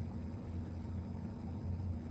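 Steady low hum with a faint even hiss: background room tone of a lecture recording, with no speech.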